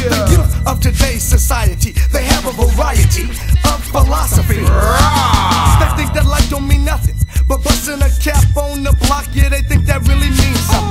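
G-funk gangsta rap track: rapping over a heavy bass line and a steady drum beat.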